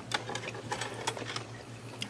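Faint, irregular small clicks and taps over a low, steady hum.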